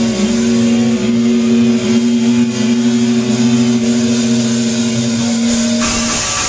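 A distorted electric guitar holds one long sustained note with slight pitch dips while the drums are silent; near the end the full rock band with crashing cymbals comes back in.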